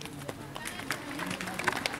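Indistinct voices talking in the background, with scattered sharp clicks and taps.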